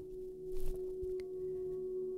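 Quiet ambient background music: a steady held drone tone with fainter higher tones over it, like a singing bowl.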